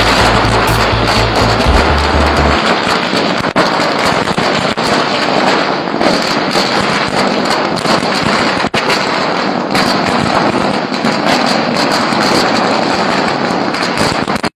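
A long string of firecrackers going off on the ground in a rapid, unbroken crackle of bangs.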